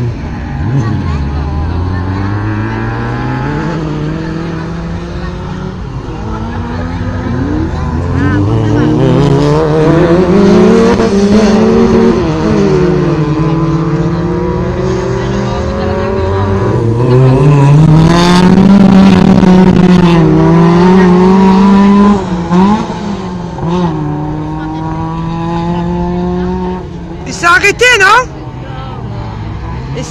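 Race car engine in an autocross heat on a dirt track, revving hard, its note climbing under acceleration and dropping back at gear changes and corners, over and over. A short, very loud burst sounds near the end.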